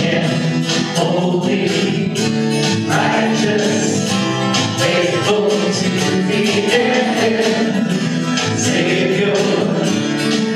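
A contemporary worship song: acoustic guitar strummed steadily under male lead vocals, with other voices singing along.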